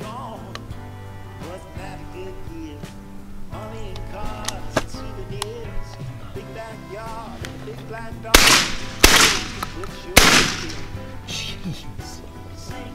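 Three shotgun shots fired at passing doves in quick succession, roughly a second apart, over background music.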